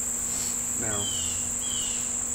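A steady, high-pitched drone from a chorus of insects, holding on without a break.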